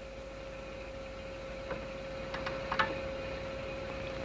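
A faint steady hum on one mid-pitched tone over a background hiss, with a few soft ticks in the middle.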